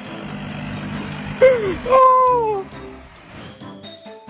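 A car engine running under background music, with two loud falling-pitch cries from a person about one and a half and two seconds in.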